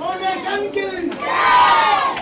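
A crowd of voices talking and calling out over one another, excited and loud, with a louder drawn-out shout rising over the hubbub in the second half.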